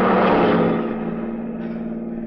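Radio-drama sound effect of a truck rushing past a speeding car: a rush of noise swells and fades within about a second and a half. Under it runs the car's steady engine drone.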